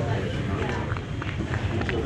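Indistinct chatter of several people talking in the background, over a steady low rumble.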